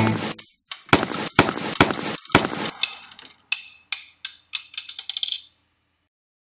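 Acoustic guitar intro music cuts off, and a sound effect follows: a run of sharp metallic clinks with a high ringing tone. The first few are loud and come about half a second apart, then smaller, quicker clinks die away shortly before the end.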